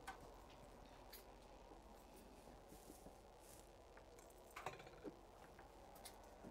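Near silence: room tone with a few faint clicks, the clearest two coming close together about three-quarters of the way through.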